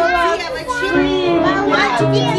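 Many young children's voices chattering and calling out over dance music, as the children dance in pairs.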